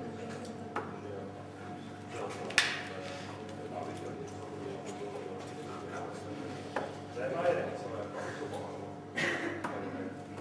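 Darts striking a bristle dartboard: one sharp, loud hit about two and a half seconds in, with a few fainter knocks later.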